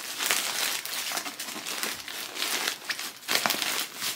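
A sleeping bag being handled and pulled about, its fabric crinkling and rustling in an irregular run of crackles.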